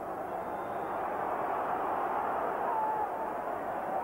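Football stadium crowd, a steady din of many voices that swells slightly, with a brief higher pitched call or whistle a little before the end.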